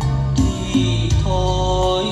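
Instrumental passage of a Vietnamese ballad playing loudly through a Kenwood stacked hi-fi system with two subwoofers and a centre speaker. Sustained melody notes ride over a strong, full bass line.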